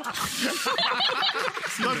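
Several people talking over one another, with snickering laughter.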